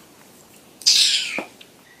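A person's short, sharp breathy exhale about a second in, a hissing puff of breath that falls in pitch and lasts about half a second.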